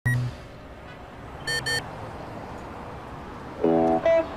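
Two short electronic beeps from an ATM keypad about a second and a half in, after a short tone at the very start. Music begins just before the end.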